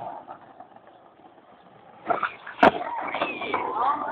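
A skateboard hitting the pavement with one sharp clack about two and a half seconds in, then its wheels rolling steadily over the pavement.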